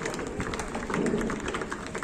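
Applause from a gathered audience: many irregular hand claps over a murmur of crowd noise.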